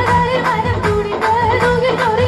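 Woman singing an ornamented, wavering melody into a microphone over a live band, with a steady drum beat and sustained bass notes.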